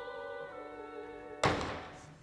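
Opera orchestra, with a voice, holding sustained notes in a live theatre performance. The music breaks off at about one and a half seconds with a single loud thud that rings away briefly.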